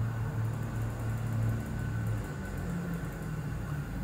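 A steady low hum over a faint hiss of background noise, easing a little about halfway through.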